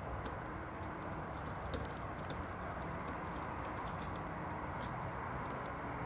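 Faint small clicks and ticks of a copper ground wire being fitted into a wall light switch's ground terminal and a screwdriver being set to the terminal screw, over a steady low background hiss.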